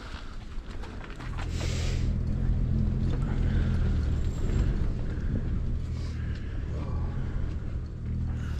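A low, steady motor rumble sets in about a second in and eases off near the end, with a brief rustle just after it starts.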